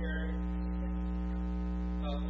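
Steady electrical mains hum: a constant buzz made of many evenly spaced tones, running unchanged through a pause in speech.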